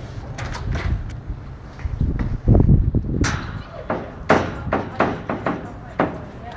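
Footsteps clanking on a metal-grated gangway, a quick run of sharp knocks in the second half, after a low rumble about halfway through.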